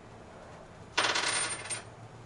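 Metal depth-regulating nose cone being unscrewed by hand from the spindle of a Gravograph IS400 engraver: a rapid metallic clicking rattle lasting just under a second, starting about halfway through.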